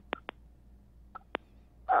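A quiet pause in conversation broken by a few short clicks: two in quick succession at the start and another about a second later.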